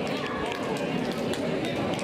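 Many voices talking at once in a gymnasium, with repeated sharp hand slaps as the two teams pass along the handshake line.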